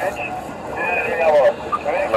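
People talking, with no other sound standing out from the voices.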